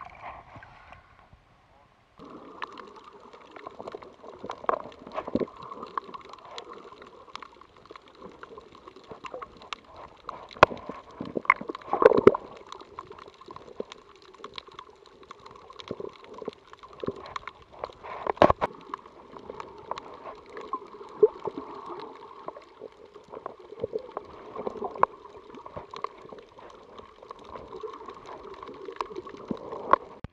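Underwater sound picked up by a Garmin VIRB action camera held below the surface: a muffled, steady hum with many scattered clicks and pops. It begins after a brief hush about two seconds in.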